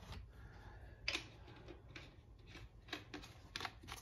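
A handful of faint, irregular small clicks and taps of a plastic bottle and cap being handled.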